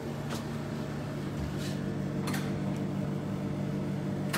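A steady low hum with a few short faint clicks.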